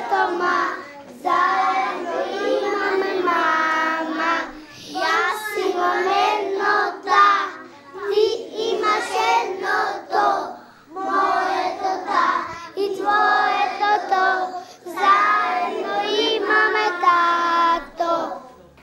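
A group of young children singing together, in phrases with short breaths between them.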